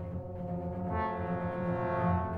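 Symphony orchestra holding a chord over sustained low notes, with brass prominent, swelling steadily louder.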